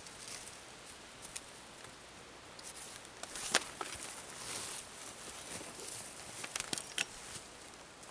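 Blue plastic tarp rustling and crinkling in short bursts as it is handled and a cord is drawn tight across it, with a few sharp clicks in the middle and near the end.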